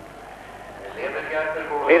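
Mostly speech on a broadcast soundtrack. A low, steady background runs through the first second, then a man's voice comes in from about a second in, and the commentary resumes at the very end.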